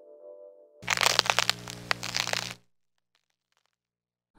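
Faint ambient music tails off. About a second in, a short burst of loud crackling over a steady low hum lasts under two seconds and cuts off suddenly.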